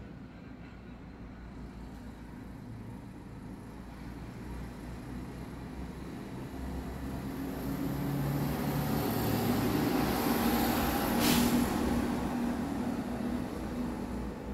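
A motor vehicle passing by, its engine and road noise swelling to a peak about eleven seconds in and then fading. There is a brief sharp sound at the loudest point.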